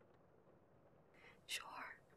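Near silence, then one softly whispered word about one and a half seconds in.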